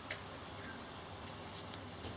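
Faint crackling and sizzling from a pencil's graphite core carrying mains current, with its wood casing smoking and burning at the contacts: a few scattered small clicks over a steady hiss.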